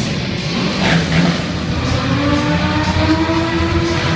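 A car engine revving, its pitch climbing slowly over the second half, heard over loud music.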